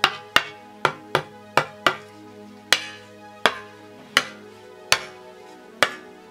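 A wooden training sword with a crossguard and a wooden bokken struck against each other, about eleven sharp wooden clacks, closely spaced at first and then slower. A quite satisfying noise; the blows leave small dents where the blades collide.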